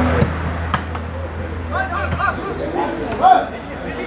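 Footballers' voices shouting short calls across an open pitch during play, with a steady low hum of wind or handling noise on the microphone. There is a brief sharp knock under a second in.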